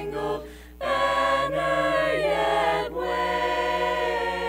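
An a cappella vocal group singing without instruments, holding long chords in close harmony. There is a short break for breath about half a second in, then a new sustained chord that shifts briefly near three seconds.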